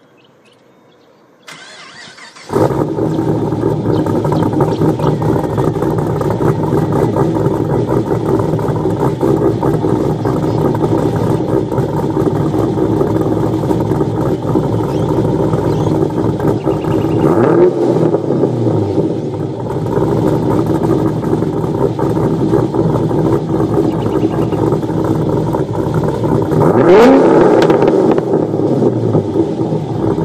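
Car engine running at a steady idle that comes in suddenly about two seconds in, revved up and back down twice, once past the middle and once near the end.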